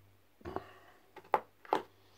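Soft handling noise, then two sharp clicks about half a second apart as a small metal miniature figure is set down among other figures on a table.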